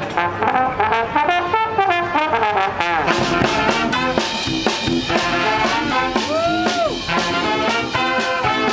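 Brass band of trumpets, trombones, saxophones and sousaphone playing a tune, with snare and bass drum joining about three seconds in. A single swoop up and down in pitch stands out near the end.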